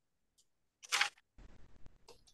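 A short hissing rustle about a second in, then faint handling noise ending in a sharp click.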